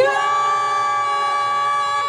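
A performer's drawn-out shouted greeting "konnichiwa", the last vowel held on one steady pitch for about two seconds before it drops away at the end.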